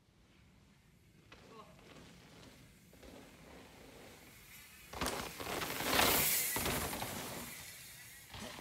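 A mountain bike coming down a dirt road at speed and passing close by: faint tyre noise growing as it nears, then a loud rush of tyres and sprayed dirt starting suddenly about five seconds in, strongest a second later and fading as the bike goes away.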